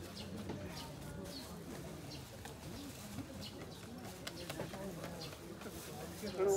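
Pigeon cooing, low and wavering, over a faint murmur of voices with a few small clicks.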